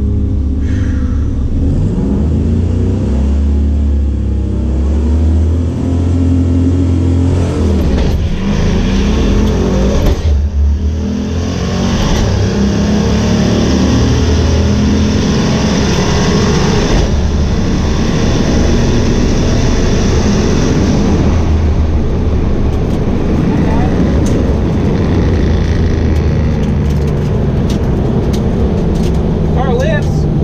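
Turbocharged 4.6-litre two-valve V8 of a Ford Mustang Bullitt, heard from inside the cabin on a quarter-mile pass. It runs low at first, then pulls hard for about ten seconds from roughly twelve seconds in, the pitch stepping with the gear shifts, and eases off afterwards.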